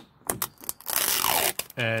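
Window tint film being peeled off a minivan's rear window glass: a few light clicks as a fingernail picks at the film's corner, then about a second of crackling tearing as the freshly applied film lifts away from the glass.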